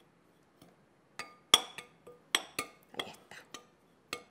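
A metal spoon stirs dry flour in a glass bowl, clinking against the glass about ten times. The clinks start a little over a second in and stop shortly before the end.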